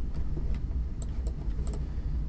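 A few short, sharp computer clicks about a second in, over a steady low hum.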